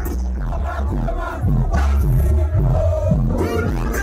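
Live music played loud through a concert sound system, with strong bass, and a crowd shouting over it.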